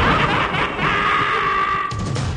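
A gravelly, sinister snicker from the Chucky doll character over a heavy rock track, with a held high note in the music that breaks off just before the end.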